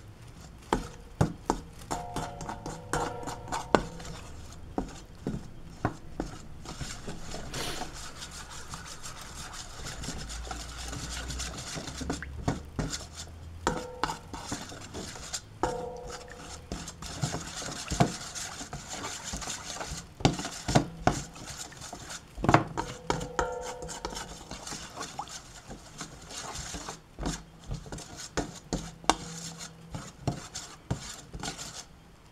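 A metal spoon stirring a wet flour-and-bean batter in a stainless steel bowl, scraping and clinking against the bowl's sides, with the bowl ringing briefly a few times.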